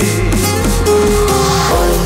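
Electronic remix dance music in an instrumental passage between sung lines: held synth and bass tones, with the steady kick-drum beat dropping out and coming back near the end.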